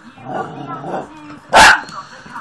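A spaniel puppy gives one sharp, loud bark about one and a half seconds in, after quieter sounds.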